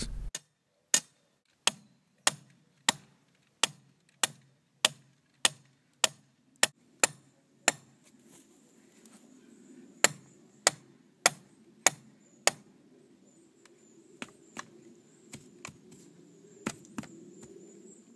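Hammer blows on a copper earthing rod, driving it into the ground: a steady run of sharp strikes about every half second or so, a short pause, then a few lighter, irregular taps near the end.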